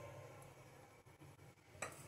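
Near silence with a faint low hum, and one light kitchenware clink near the end as cooking oil goes into an aluminium pressure cooker.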